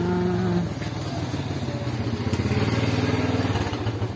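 Motorcycle engine running steadily at low revs, with an even pulsing beat.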